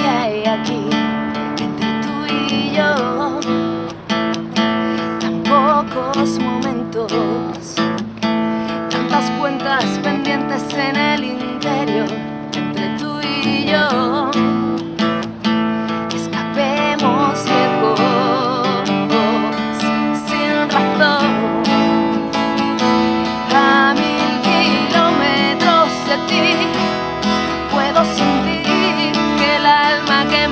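A woman singing while strumming her own cutaway acoustic guitar. Her voice holds long notes with vibrato over steady strummed chords.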